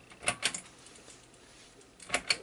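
A quick run of three or four sharp plastic clicks as a handheld logic probe is handled against the circuit board, then faint room noise.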